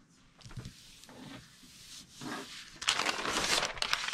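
Hands pressing a sheet of poster board down onto adhesive-backed wrapping paper, with faint paper rustling. About three seconds in, a louder rustle of paper as the large sheet is lifted and turned over.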